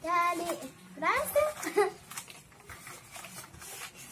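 A young child's high-pitched voice, two short vocal bursts in the first two seconds with a rising glide in the second, then quieter, with only faint handling noises.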